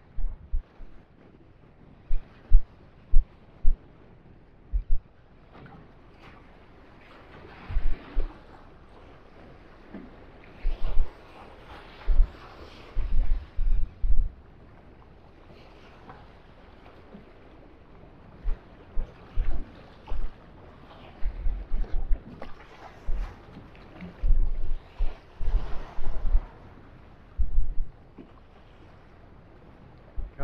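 Wind buffeting the microphone in irregular gusts, heard as repeated low thumps, over the steady wash of choppy sea around a small boat.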